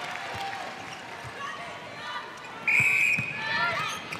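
Indoor arena crowd murmur with scattered dull thuds of a netball bouncing on the court. About three-quarters of the way through, an umpire's whistle blows once, a short steady note, signalling the centre pass restart after a goal.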